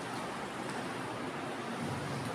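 Steady classroom room noise: an even hiss with no distinct sounds standing out.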